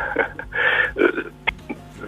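A man's hesitant murmurs and breaths heard over a telephone line, with a short click about a second and a half in.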